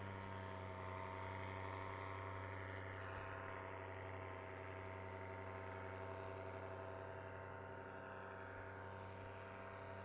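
A motor running steadily: a low, even hum that holds one pitch, with no change in speed.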